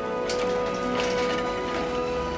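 Loaded metal shopping cart rolling over cracked asphalt, its wheels giving a dense, crackling rattle, with background music playing over it.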